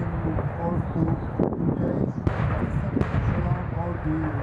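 A steady low rumble from a line of tanks, with a loudspeaker announcer's voice talking faintly over it. Three sharp distant cracks of live gunfire come about one and a half, two and a quarter, and three seconds in.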